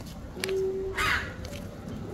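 A short harsh animal call about a second in, just after a brief steady tone.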